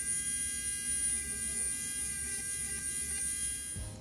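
Podiatry rotary nail drill with a grinding burr running at a steady high-pitched whine, debriding an overgrown great toenail; it stops just before the end.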